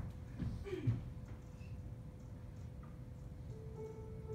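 A couple of footsteps thud on a wooden stage floor in the first second, over a steady faint hum. Near the end a recording of music starts playing with sustained notes.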